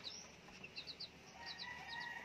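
Young chicks peeping faintly, short high peeps coming in quick runs of two or three.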